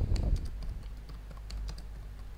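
Typing on a computer keyboard: irregular, scattered key clicks over a steady low hum.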